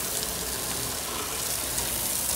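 Garden hose spray nozzle sending a steady stream of water against an RV's front grille and bumper, rinsing them down.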